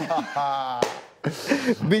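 Men laughing heartily, with a single sharp smack a little under halfway through.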